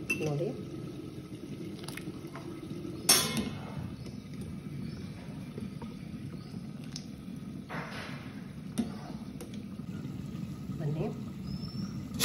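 Wire spider strainer clinking and scraping against a steel pot while parboiled rice is lifted out of hot water, with water dripping and pouring off the rice. The loudest is a sharp metal clink about three seconds in, with another scrape near eight seconds.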